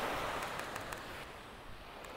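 Small waves washing in on a sandy shore, a soft wash that is loudest at the start and slowly dies away. A few faint quick clicks come in the first second.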